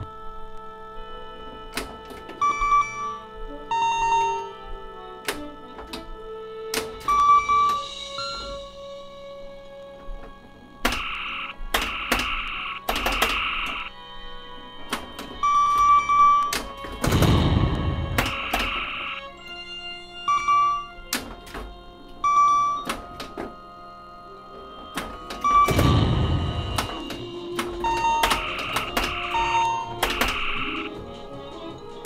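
Bally Star Trek pinball machine in play with a custom sound board, over background music. Short electronic scoring beeps and tones mix with mechanical clicks and thunks from the playfield. Explosion sound effects play for pop bumper hits, the loudest about 17 and 26 seconds in.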